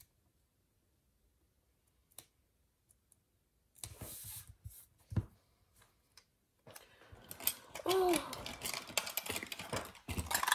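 Hands handling stickers and paper at a desk, then small hard plastic items. After a few quiet seconds there is a brief rustle and a single click, and from about seven seconds in a dense run of clicking and rattling.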